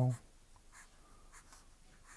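Marker pen drawing on paper: a few short, faint scratchy strokes of the tip across the sheet.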